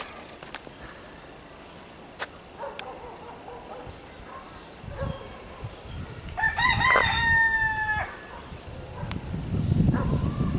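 A rooster crowing once, a little past the middle: a crow of about a second and a half that ends on a held note. A low rumble builds near the end.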